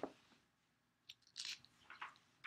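Near silence: room tone with a few faint, brief clicks and hissy mouth or breath noises at the microphone, about a second and a half and two seconds in.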